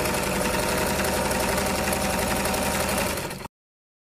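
A machine running steadily with a fast, even mechanical rattle, which stops abruptly about three and a half seconds in.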